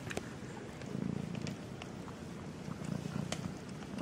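Small kitten purring, a low rumble that swells about a second in and again near the end, with a few light clicks.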